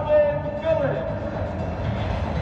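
A stadium PA announcer's long, drawn-out call of a player's name, echoing and fading out about a second in. Under it runs a steady low rumble of stadium crowd noise.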